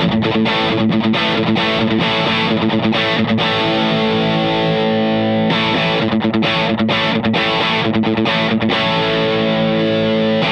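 PRS SC245 electric guitar played through the overdrive of a Carl Martin Quattro multi-effects pedal, with both drive channels set alike for an A/B comparison. Distorted chords ring out for the first half, then shorter chords with brief gaps from about five and a half seconds in.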